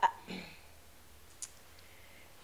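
A woman's voice says a single word, then a pause of near-quiet room tone broken by one faint, short click about one and a half seconds in.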